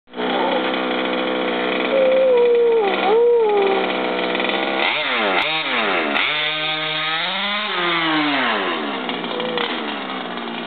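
A 1/5-scale RC buggy's 30.5cc two-stroke stroker engine idles steadily, then is revved in a few quick blips about five seconds in and in a longer rise and fall through to about nine seconds. A dog whines over the idle from about two to four seconds in.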